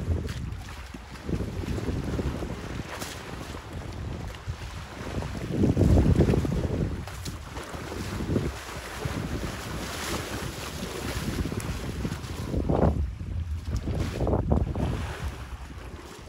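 Wind buffeting the microphone in gusts, over the sloshing and splashing of muddy water as elephants wallow and roll in a waterhole.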